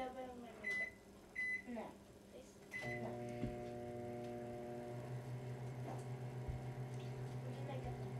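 Microwave oven keypad beeping three times as it is set, then the microwave starting and running with a steady hum that grows a little stronger about five seconds in.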